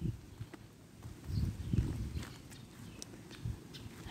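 Footsteps in sandals on a paved driveway: a few soft low thumps and light scuffs and clicks.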